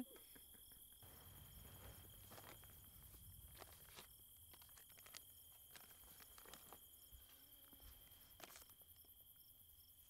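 Quiet night-time outdoor ambience: a steady high insect drone with faint, evenly repeating chirps, and a few soft clicks or rustles.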